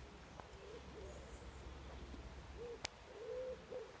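A pigeon cooing faintly, a few short low calls about half a second in and again in the second half, with one small click near the three-second mark.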